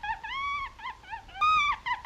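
A high-pitched squeaky animal-like call, repeated in a loop: one long arched note, a run of short quick chirps, then a louder held note about one and a half seconds in that opens with a sharp click, followed by more chirps.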